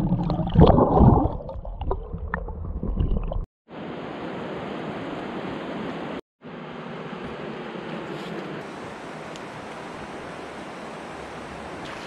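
Water heard through an underwater camera, a loud, low churning and bubbling with irregular surges, which cuts off after about three and a half seconds. It gives way to a steady rush of flowing river water.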